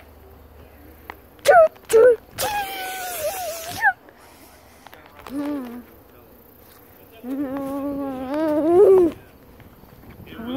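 A person's wordless vocal sounds: a few short squeaky calls, then a longer held one that rises at its end about a second before the end.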